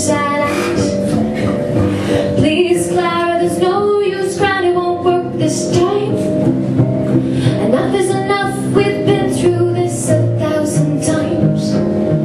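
Live band music: a woman singing a melody over plucked-string accompaniment.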